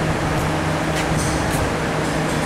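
Steady low mechanical hum of running machinery with a constant low tone, and two faint clicks about a second in.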